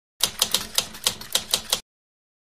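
Typing sound effect: a quick, uneven run of about eight typewriter-like key clicks that stops abruptly, going with title text being typed onto the screen.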